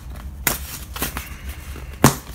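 Wrapping around a beach towel rustling and crinkling as it is handled, with sharper crackles about half a second and a second in.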